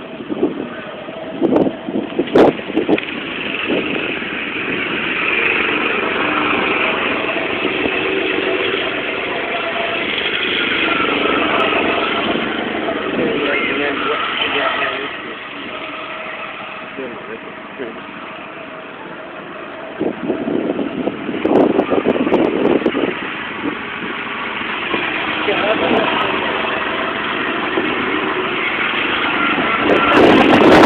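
Go-kart engines running on the track as a steady drone whose pitch shifts as the karts speed up and slow down, with indistinct voices nearby.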